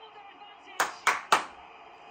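Three sharp claps in quick succession, about a quarter-second apart, over the faint sound of a televised football match.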